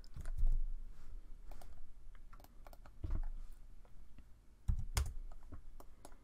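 Irregular keystrokes and clicks on a computer keyboard and mouse while entering a drawing command. A few heavier taps stand out, the loudest about five seconds in.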